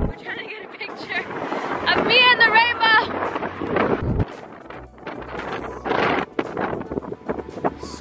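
Wind buffeting the microphone in gusts, with a high, wavering voice about two seconds in and other brief voice sounds.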